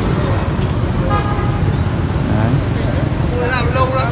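Steady rumble of street traffic, with a brief vehicle horn toot about a second in.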